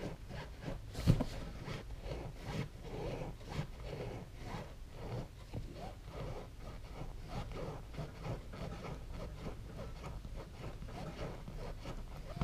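Serrated knife sawing up and down through the foam of a Honda Goldwing GL1800 motorcycle seat: a faint, uneven rasping, with one sharper knock about a second in.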